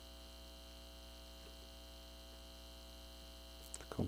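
Low steady electrical mains hum with faint background hiss, and a couple of faint clicks near the end.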